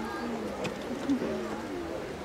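Indistinct chatter of onlookers, several distant voices overlapping, over a faint steady low hum.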